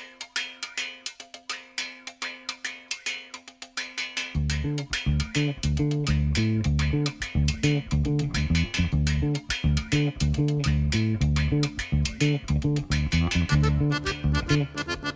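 Ukrainian folk-pop instrumental: a bandura plucked in quick repeated notes over a held note. About four seconds in, a loud low bass and chord accompaniment joins with a driving rhythm.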